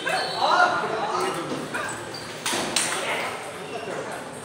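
Table tennis balls knocking off bats and tables in a reverberant hall, with two sharp clicks close together past the middle. Players' voices can be heard through the first second and a half.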